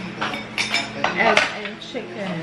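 A metal spoon and fork clinking and scraping against a plate while eating, several sharp clinks in quick succession, most of them in the second half.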